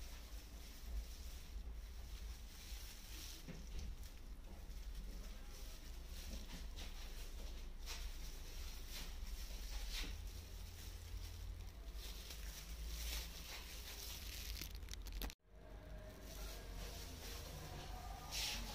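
Faint brushing and crinkling from an application brush and disposable plastic gloves working a thick straightening cream through hair, with soft strokes every few seconds over a steady low rumble. The sound cuts out for an instant about three-quarters of the way through.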